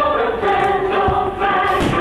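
Choir singing over orchestral music, the fireworks show's patriotic soundtrack, with two dull low thuds of fireworks bursting, the second near the end.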